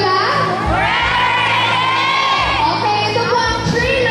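A woman singing a song live into a handheld microphone over amplified music, with some crowd noise.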